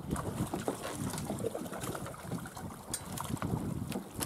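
Wind buffeting the microphone over water splashing around a small boat's hull, uneven and gusty, with a few sharp clicks.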